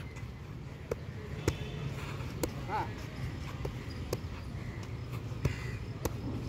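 Boxing gloves punching focus mitts during pad work: a series of short, sharp smacks at irregular intervals, roughly one every half-second to second.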